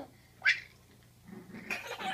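One short, high-pitched yelp from a small puppy, about half a second in, as it tugs a toy with a baby.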